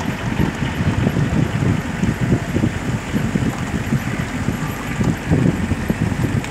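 Wind buffeting the phone's microphone: a loud, uneven low rumble.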